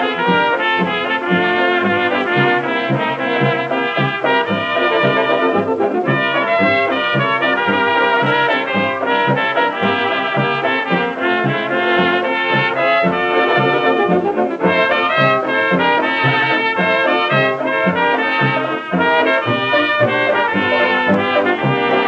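1926 fox-trot dance-orchestra record playing an instrumental passage without singing, led by trumpets and trombone over a steady beat in the bass. Its sound is cut off above the mid-treble, as on an old 78 rpm disc.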